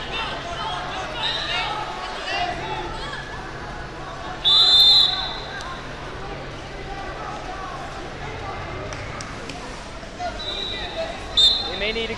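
Referee's whistle: one shrill blast of about a second, roughly four and a half seconds in, then two shorter blasts near the end, over the babble of voices in a busy gym.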